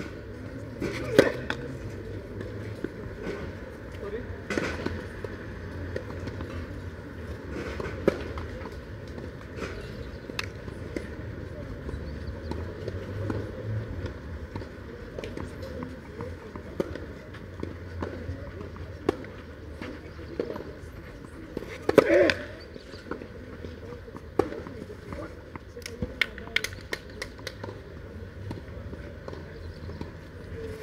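Tennis racket strokes on a ball during a doubles point on a clay court: a serve about a second in, then returns a few seconds apart, each a sharp pop. After a pause comes another loud hit, then a run of small ticks from ball bouncing.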